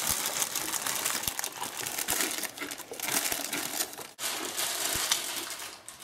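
A plastic snack packet crinkling and rustling as it is handled and eaten from, with crunching mixed in; it breaks off briefly about four seconds in.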